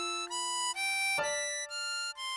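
Ten-hole diatonic harmonica playing a melody of single high notes in the upper holes, about five notes in two seconds. Underneath is a sustained backing chord that changes about a second in.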